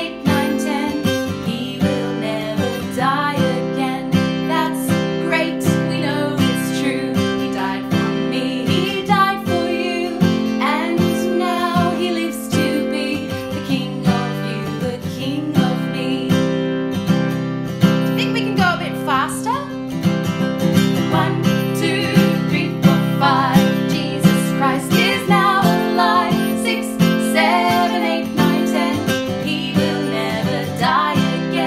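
Acoustic guitar strummed in a steady rhythm while two women sing a children's counting song to a familiar nursery-rhyme tune.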